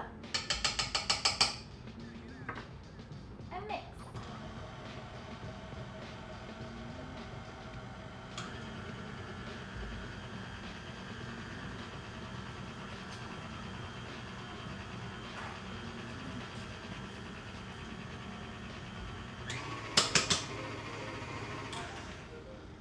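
KitchenAid Ultra Power tilt-head stand mixer running steadily, beating flour and other dry ingredients into red velvet cake batter in its stainless steel bowl. A quick run of taps comes at the start and a couple of sharp clicks near the end.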